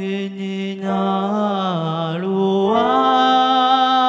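A solo voice singing long, held notes in a Taiwanese Indigenous language over a stage-keyboard accompaniment. The pitch dips about halfway through and climbs again.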